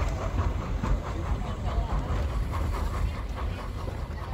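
Steady low rumble of La Trochita, the 100-year-old narrow-gauge steam train, running along its track, with passengers' voices faint in the background.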